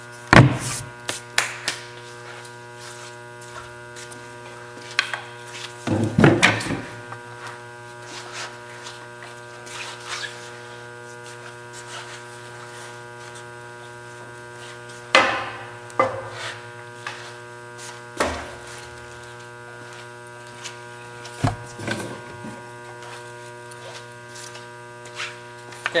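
Table saw running steadily with an even electric hum. Over it come several short, sharp bursts and clacks as sheet stock is fed across the table into the blade. The loudest are just after the start, around six seconds in and around fifteen seconds in.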